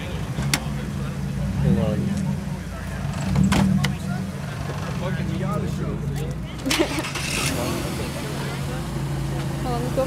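A car engine idling steadily, with crowd voices over it and a few sharp knocks.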